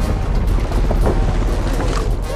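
Film soundtrack music over a loud, deep rumble and rushing noise.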